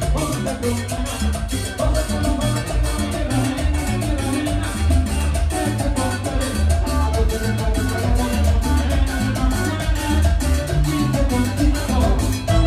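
Live Latin dance band playing at full volume: timbales, cymbals and drum kit drive a fast, dense rhythm over a strong bass line, with electric guitar and a metal hand scraper.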